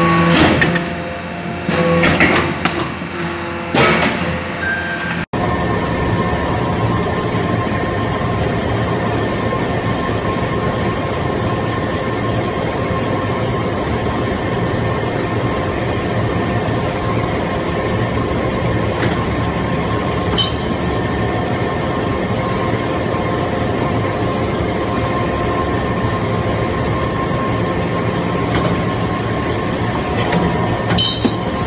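A hydraulic metal-chip briquetting press running: a few sharp clinks and knocks during the first five seconds, then a steady mechanical hum with faint constant tones from the press and its hydraulic power unit, broken by a few faint ticks.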